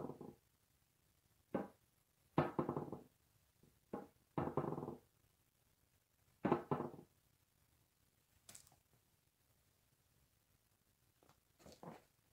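Latex balloon squeaking against skin and wet acrylic paint as it is pressed down and twisted on a canvas: about six short pitched squeaks in the first seven seconds, then a brief hiss.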